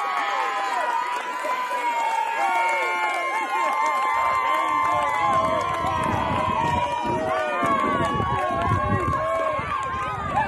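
Many voices yelling and cheering at once, some held as long high shouts, greeting a home run. From about four seconds in, a low rumble joins them.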